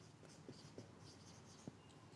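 A whiteboard marker writing on a whiteboard, faint, with a few light ticks of pen strokes.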